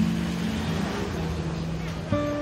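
City street noise with traffic, under soft background music with a few held notes.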